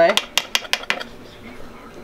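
Steel candy bars on a marble slab knocked loose from a sheet of setting ribbon candy with a metal scraper: about five sharp metal clinks in the first second, then quieter.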